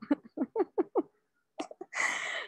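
A woman laughing: a quick run of about five short 'ha' notes, each dropping in pitch, in the first second, then a few softer breathy ones near the end.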